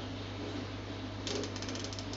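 Plastic cable tie being pulled tight, a quick run of ratcheting clicks lasting about half a second near the end, over a steady low hum.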